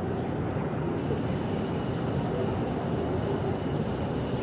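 Steady open-air background noise: an even, low rumble with no distinct events.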